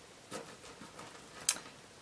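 Small sterling silver jewelry pieces clinking lightly against each other as fingers pick through a pile: a few faint ticks, the sharpest about one and a half seconds in.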